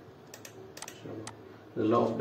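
A handful of sharp computer-mouse clicks, about five in the first second and a half, as an answer is selected and the next question is loaded. A man's voice starts near the end.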